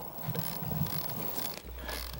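Fishing reel's clicker ratcheting irregularly as a fish pulls line off on a bite, with a low steady hum coming in near the end.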